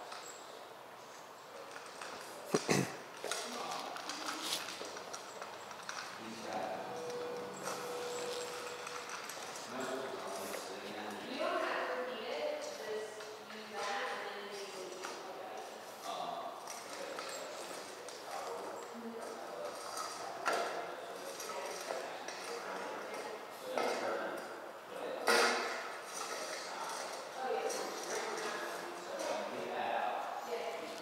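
A dog eating from a metal bowl on a concrete floor: scattered clinks and knocks of the bowl as it eats, the sharpest about three seconds in and again near the end.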